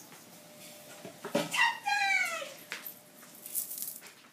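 Wooden office door swinging shut on its closer, giving one smooth, falling creak of about a second, with a few light knocks around it.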